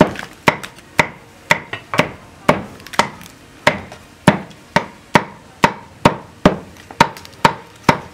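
Meat cleaver chopping roast pork on a wooden chopping board, steady sharp strokes about two a second, each with a short ring.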